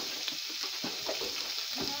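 Food sizzling steadily in hot oil in a frying pan, with a few faint knocks.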